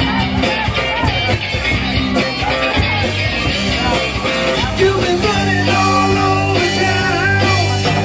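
Live rock band playing a steady groove: drum kit, bass guitar and electric guitar.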